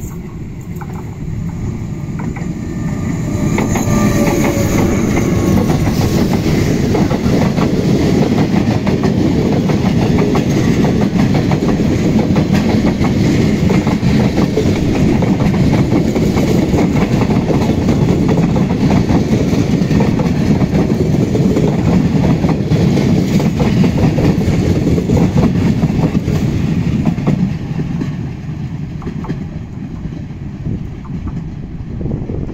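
The Transcantábrico, a locomotive-hauled train of passenger coaches, passes close by on the rails. The rolling sound builds over the first few seconds as the locomotive arrives, stays loud with the wheels clicking over the track while the coaches go by, and fades near the end as the train recedes.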